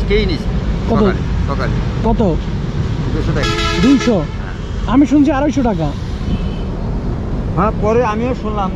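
A vehicle horn sounds once, a single steady toot of under a second about three and a half seconds in, over a low steady rumble.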